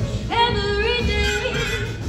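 A female vocalist singing a slow blues line with a jazz big band behind her: her voice scoops up into a long held note about a third of a second in, over a steady walking bass.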